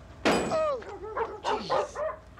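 A dog barking and yelping in several short calls, the first a loud sharp bark about a quarter second in.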